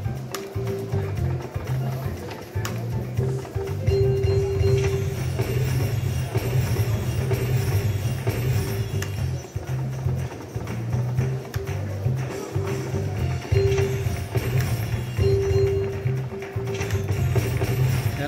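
Slot machine bonus-round music with a steady pulsing bass beat and short held tones, playing on through the respin feature as bells land and the spin counter resets.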